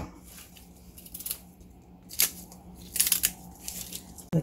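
Small kitchen knife cutting through crisp young radish (yeolmu) stems, a few sharp snips: one about a second in, one just past two seconds and a quick run of them around three seconds. A faint steady hum lies underneath.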